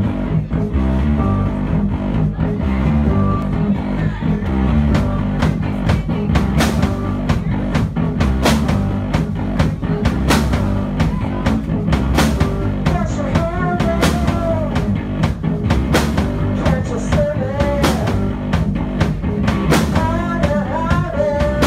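Live rock band playing: electric bass and keyboard notes, with the drum kit coming in about four or five seconds in and driving a steady beat. A woman's singing voice joins in the second half.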